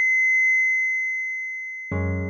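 Heart-monitor flatline tone: one steady high-pitched beep held on and slowly fading, the signal of no heartbeat. Just before the end a deep sustained music chord comes in suddenly.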